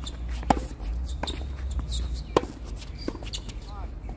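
Tennis rally on a hard court: a loud racket strike on the ball about half a second in, followed by further sharper and softer knocks of the ball being hit and bouncing, about four in all, with a short squeak near the end.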